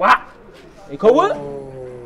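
A man's voice: a short syllable at the start, then about a second in a drawn-out vocal exclamation that sweeps up sharply and holds a long, slowly falling note.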